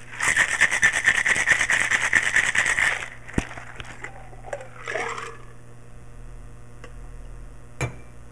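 Boston shaker, a metal tin over a mixing glass, shaken hard in a fast rattle of about seven or eight strokes a second for roughly three seconds. A sharp knock follows as the shaker is broken apart, and there is a clunk near the end as the tin goes down on the bar.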